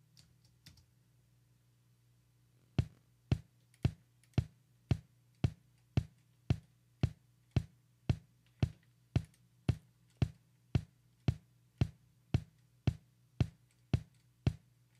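A soloed kick drum track playing back from a Pro Tools mix session, single hits repeating evenly about twice a second, its tail and attack being trimmed with EQ and compression to cut the room boxiness. A few faint clicks come before the drum starts, about three seconds in.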